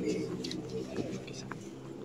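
Low cooing bird calls in the background, strongest in the first second, with faint distant voices.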